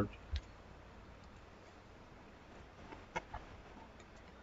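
Quiet room tone with a few faint clicks: one about a third of a second in, and two or three more close together near three seconds.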